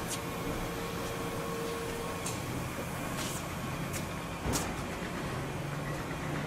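Steady low machinery hum with faint level tones, broken by a few light knocks and clicks, the loudest about four and a half seconds in.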